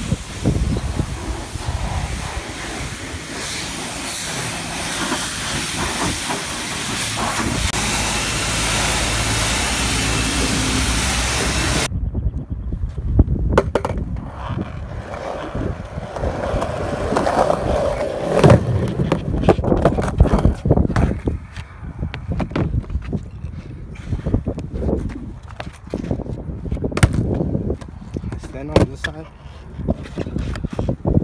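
A loud steady hiss for about the first twelve seconds, then it cuts off. After that come skateboard wheels rolling on concrete and plywood ramps, with repeated clacks and knocks of the board.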